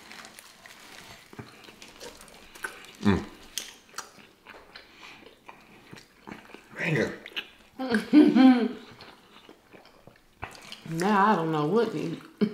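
Close-miked chewing of club sandwiches, with many soft wet mouth clicks and crackles, broken by a few short hummed voice sounds of enjoyment; the longest hum, wavering in pitch, comes near the end.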